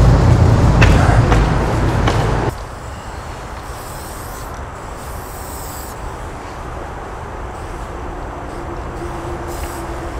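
Low rumble of road traffic, loud for the first two and a half seconds and then cutting off suddenly. After that, a spray paint can hisses in several short bursts as paint goes onto the wall.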